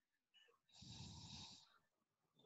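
Near silence with one faint, rough breath-like noise lasting just under a second, starting about three-quarters of a second in.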